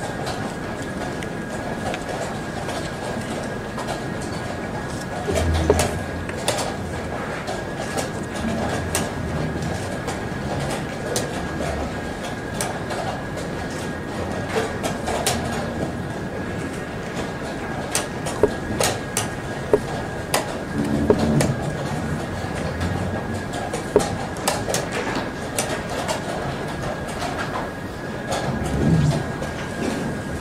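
Sharp, irregular clicks of chess pieces being set down and a chess clock being pressed in a fast blitz endgame, over steady hall ambience with a faint constant high whine.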